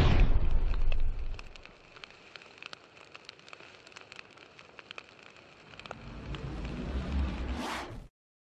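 Sound effects from an animated fire intro. A low explosion-like rumble fades out over the first second or so, followed by sparse crackling like burning fire. A low rumble then builds up with a rising whoosh near the end and cuts off suddenly.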